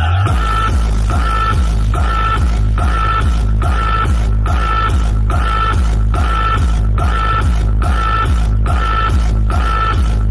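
Loud electronic dance music with a deep, heavy bass line and a short repeating stab on every beat, about every three-quarters of a second, played through a truck-mounted DJ speaker rig.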